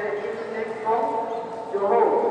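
Voices of people talking in a large indoor sports hall.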